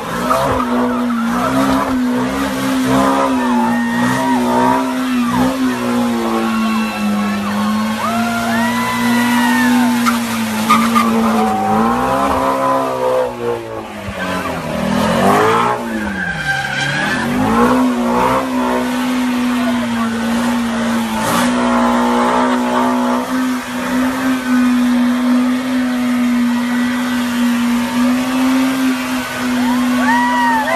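Ford Mustang Shelby GT350's V8 held at high revs through a burnout, with tyres squealing in short, arching chirps. About halfway through the revs dip sharply and climb back.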